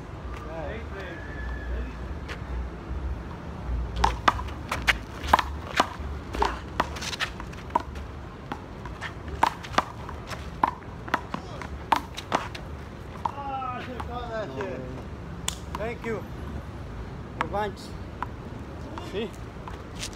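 Handball rally: a run of sharp, irregular smacks as the rubber ball is slapped by hand against the wall and bounces on the asphalt, from about four seconds in to past halfway. Men's voices call out afterwards.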